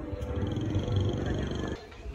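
Flatbed tow truck's diesel engine idling: a low, steady rumble that cuts off abruptly near the end.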